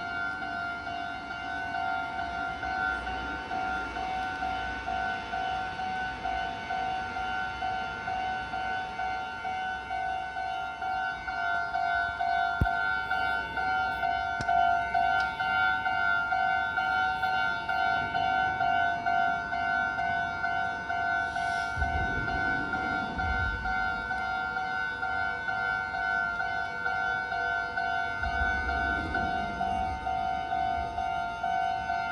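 Japanese railway level-crossing warning bell ringing continuously in a fast, even electronic beat while the barriers are down, signalling an approaching train. Low rumbles come through about two-thirds of the way in and again near the end.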